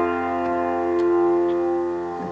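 A chord held on a piano keyboard, ringing on and slowly fading, with faint ticks about twice a second.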